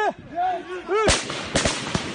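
Volley of gunfire starting suddenly about a second in, right after a spoken count of three, the shots coming close together and continuing.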